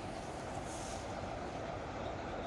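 ChME3 diesel shunting locomotive running at a distance as it pushes a railway snow-clearing train through the yard, a steady rumble.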